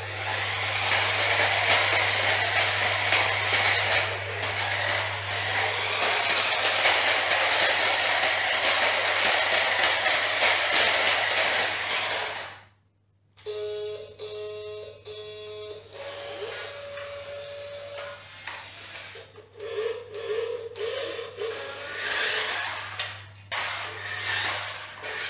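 VTech Switch & Go Dinos Turbo remote-control triceratops toy: a loud, rough whirring of its motor and gears for about twelve seconds as it drives and changes from dinosaur to car. After a brief break come quieter electronic beeping tunes and sound effects from its speaker.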